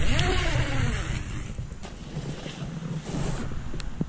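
Camera-microphone handling noise as the camera is picked up and moved: a low rumble throughout, with a loud rubbing rustle over the first second and a half that then eases.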